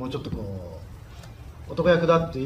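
A man speaking Japanese in a room: a soft trailing bit of voice at the start, a short pause, then his speech resumes near the end.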